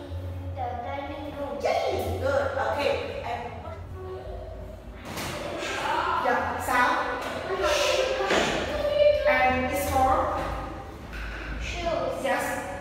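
A child's voice saying English words aloud through a headset microphone, with a low steady hum underneath.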